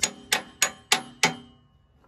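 Hammer tapping a new steel ram pin through the upper pivot of a skid steer's Bobtach quick-attach. Five quick metal-on-metal strikes, about three a second, each with a short ring, stopping about a second and a half in.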